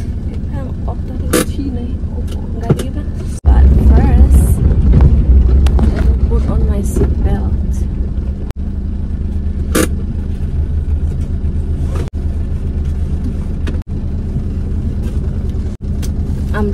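Steady low rumble of a car heard from inside the cabin, with its engine running. A woman's voice is heard faintly over it. The rumble grows markedly louder about three seconds in, and the sound cuts out briefly several times.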